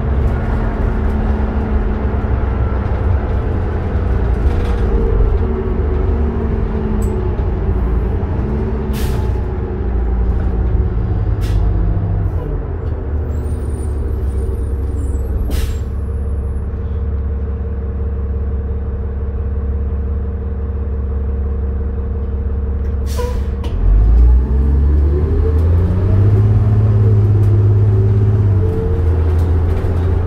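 Diesel engine of a 2007 New Flyer D40LF city bus, heard from inside the passenger cabin: it winds down as the bus slows, runs at a steady idle for about ten seconds, then revs up with a rising pitch as the bus pulls away. A short air-brake hiss comes just before it pulls off, and a few sharp rattles or clicks come while it slows.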